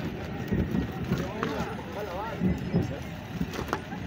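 A crowd of many people talking and calling out at once, overlapping voices with no single clear speaker.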